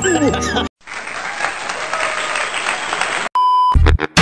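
Applause with laughter, a steady clatter of clapping lasting about two and a half seconds, cut off by a short electronic beep, after which music starts.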